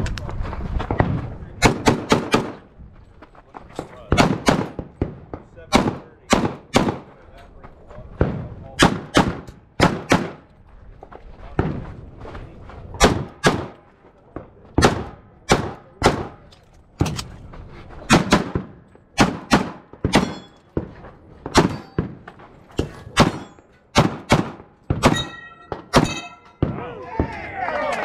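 Semi-automatic competition pistol fired in quick pairs, dozens of shots with short gaps between strings, during a timed practical-shooting stage run that stops about 26 seconds in. A brief ringing tone sounds with the last few shots.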